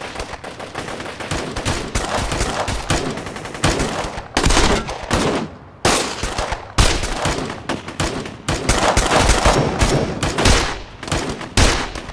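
Gunfire in a firefight: rapid single shots and automatic bursts almost without pause, with short breaks a little after four seconds and just before six seconds in.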